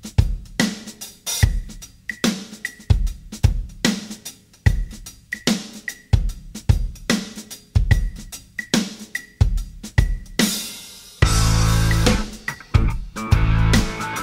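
Solo rock drum kit intro: bass drum, snare and hi-hat playing a steady beat. About ten seconds in, a cymbal wash leads into the full band, with bass and guitar coming in.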